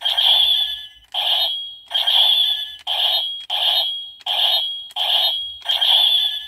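Gaburichanger transformation-gauntlet toy playing its electronic attack sound effects through its small built-in speaker as its grip button is pressed again and again: a run of about eight short, tinny bursts, each a little under a second apart. The sounds come at random, two at a time.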